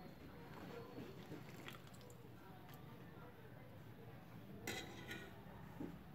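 Metal ladle working in a pot of soup broth, with faint clinks against the pot and two sharper clinks a little before the end.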